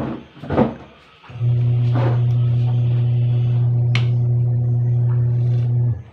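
A loud, steady low hum on one unchanging pitch sets in about a second and a half in and cuts off suddenly at the end, with a few short clinks and knocks at the start and one sharp click in the middle.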